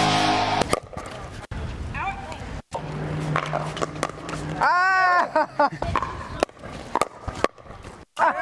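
Pickleball rally: paddles striking a plastic pickleball, giving sharp pops about a second apart, with a player's short shout about halfway through. Rock guitar music cuts off just under a second in.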